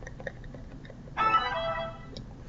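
Laptop low-battery alert: a short, steady electronic chime starting just over a second in and lasting under a second, warning that the battery is nearly flat. A few faint clicks come before it.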